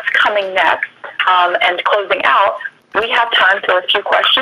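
Speech: a person talking over a telephone-quality conference line, the voice thin, with no highs, and broken by short pauses.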